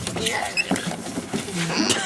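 Squeaks and rubbing of a person sliding down a plastic playground slide, with a few short high squeaks about half a second in.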